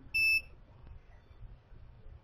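A single short electronic beep from the DVR's built-in buzzer, about a quarter second long, as the recorder finishes booting.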